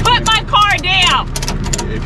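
Tow truck engine idling, a steady low hum, under a woman's loud, raised voice in the first second and a scatter of sharp clicks.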